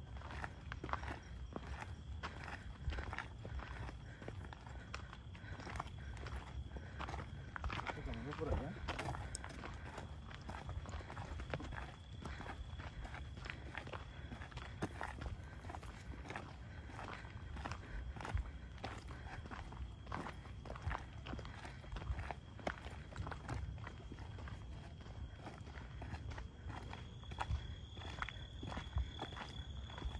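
Footsteps of people walking on a dry dirt trail through brush, steady and irregular throughout, with a faint steady high-pitched trill in the background.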